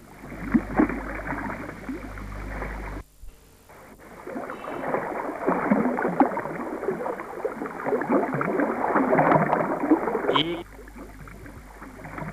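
River water rushing and splashing over a shallow, rippled stretch, as an irregular noise. It drops out briefly about three seconds in, then comes back louder and quietens near the end.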